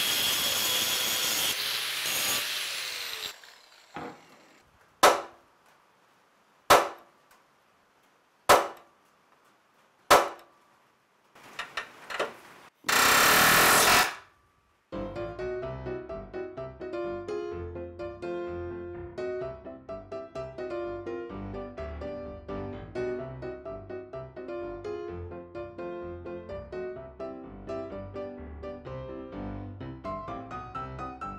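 Angle grinder cutting through steel frame rivets for about three seconds, then several sharp knocks about a second and a half apart and another short burst of grinding. Background music takes over for the second half.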